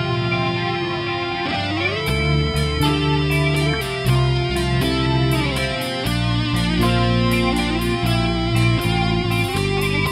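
Metal band playing an instrumental intro on distorted electric guitars. About two seconds in, drums and bass come in under a driving guitar riff with sliding notes.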